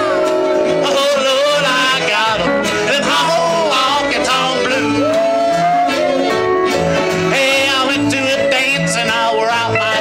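Live honky-tonk country band playing: acoustic and archtop electric guitars, upright bass, fiddle and steel guitar over a steady bass beat.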